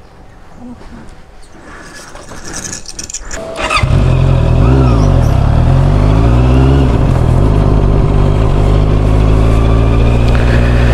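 A motorcycle engine comes in loud about four seconds in and keeps running. Its pitch rises and drops a couple of times as it picks up speed through the gears.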